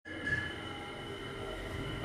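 Lift car running up its shaft: a steady hum with several faint high whining tones above it.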